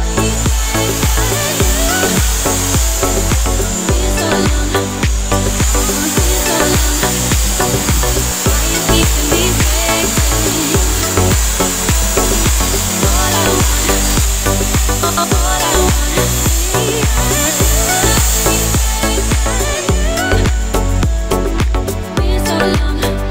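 Handheld electric drill with an attachment grinding against a steel bicycle rim to clean and polish it, a steady high-pitched whir that stops briefly about five seconds in and ends near the end, under loud background music with a steady beat.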